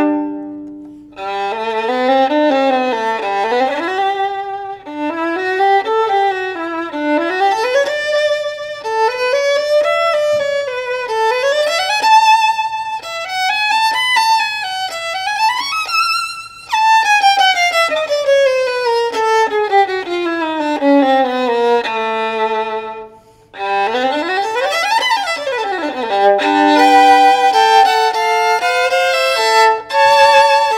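Johannes Kohr K500 violin played solo with the bow: phrases and runs that climb and fall, a long descending run past the middle, then a quick sweep up and back down. It drops out briefly about a second in and again a little past three quarters of the way.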